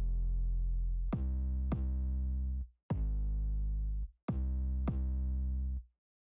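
A deep 808 bass played on its own in a tight, repeating line of four long, sustained notes. Each note cuts off sharply before the next begins.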